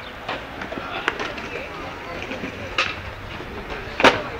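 Skateboard wheels rolling on a concrete path, a steady rumble with a few sharp clicks along the way.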